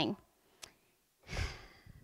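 A woman's word trailing off, a faint click, then a short breath drawn in close to a handheld microphone about a second and a half in.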